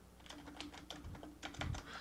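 Typing on a computer keyboard: a quick, irregular run of faint keystrokes.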